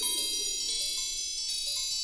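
Intro music of chimes: a string of high, bell-like notes struck one after another and ringing over each other, with a few lower notes stepping down in pitch.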